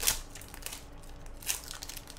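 Foil wrapper of a Yu-Gi-Oh booster pack crinkling and tearing as it is ripped open by hand. The loudest part is a sharp rip at the very start, followed by quieter rustling and another short crackle about one and a half seconds in.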